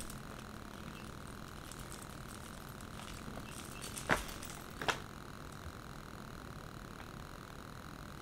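Quiet room tone with a steady faint hiss, broken by two short clicks about four and five seconds in as a cable and the packaging of a small portable photo printer are handled.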